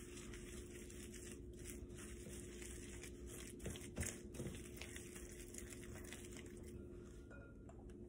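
Faint whisking of a soft cream cheese filling in a ceramic bowl with a coated wire whisk: quiet stirring and scraping, with a few light taps around the middle, over a steady low hum.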